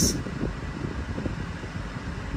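Steady low rumble of a car running at idle, heard inside its cabin with the ventilation fan going.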